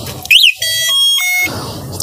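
Varcas Falcon electric scooter's electronic sounder as the scooter powers on: a quick rising-and-falling chirp, then about a second of steady electronic tones stepping between pitches, a short start-up tune.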